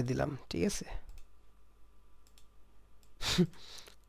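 A few faint clicks of a computer mouse and keyboard. A man's voice trails off at the start, and a short breathy burst comes near the end.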